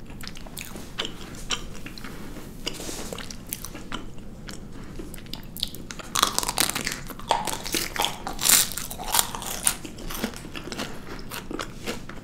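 Close-up eating sounds: small chewing clicks, then about six seconds in a bite into a white-chocolate-covered marshmallow brings a few seconds of loud crackling as the thin chocolate shell breaks and is chewed, settling back to softer chewing near the end.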